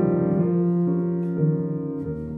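Solo piano improvisation: a slow, sustained chord struck at the start, with single notes changing above and below it about every half second.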